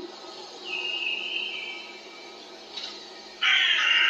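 Harsh, crow-like calls: a faint higher call about a second in, then a loud raspy call starting near the end.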